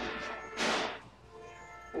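Store background music holding a steady note, with a short rushing scrape, like something brushing or sliding, about half a second in.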